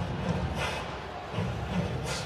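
Ice hockey arena ambience: a crowd murmuring, with music playing faintly over it.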